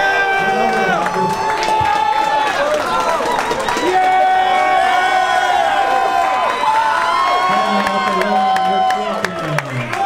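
Crowd cheering and yelling, many voices shouting at once with long held yells, as an arm-wrestling match ends.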